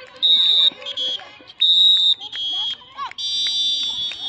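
Shrill sports whistle blown in a series of short blasts, each about half a second, then a longer blast with several tones sounding together near the end. Shouting voices lie underneath.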